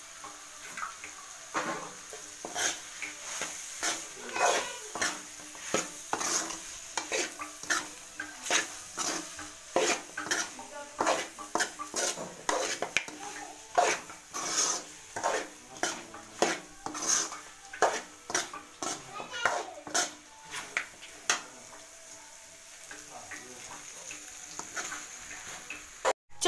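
Steel spoon stirring and scraping mutton and egg in a hot aluminium kadai: repeated scrapes against the pan, one or two a second, over a steady frying sizzle. The stirring eases off near the end.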